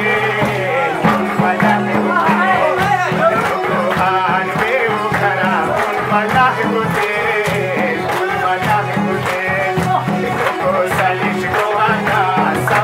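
Live folk music at a steady beat: a double-headed drum struck in a regular rhythm under an ornamented melody on an electronic keyboard.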